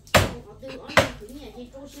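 Meat cleaver chopping raw bone-in meat on a wooden chopping block: two sharp heavy strikes about a second apart, with a third just at the end.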